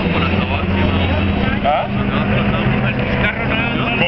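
Engines of two classic cars running as they drive through a corner. A steady low engine note is strongest in the first second or so, with people talking over it.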